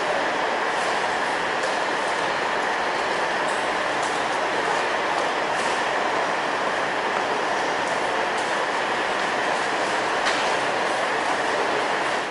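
Steady running noise of a stationary Class 150 diesel multiple unit idling at a station platform, with a faint steady whine and a few light clicks.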